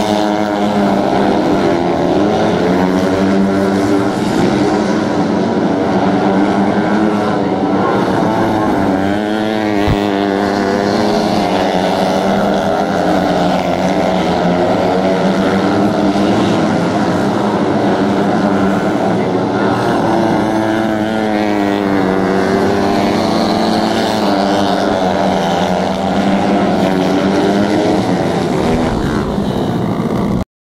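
Several 125cc dirt-track racing motorcycles running at race speed. Their engines overlap in a steady loud drone that rises and falls in pitch as the riders go on and off the throttle through the turns.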